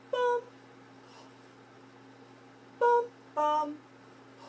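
A woman singing short two-note tonal patterns on a neutral 'bum' syllable. A single held note ends just after the start, then about three seconds in a pair of notes comes, the higher one first and then the lower, each about half a second long, with a steady low hum underneath.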